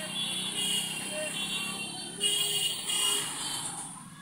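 Busy street ambience: vehicle traffic and motor noise mixed with music and voices.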